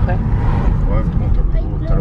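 Steady low rumble of road and engine noise inside the cabin of a moving car, with a voice speaking in snatches over it.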